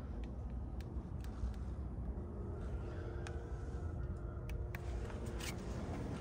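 Faint background noise: a low steady rumble with a few light clicks, joined by a faint steady hum about two seconds in.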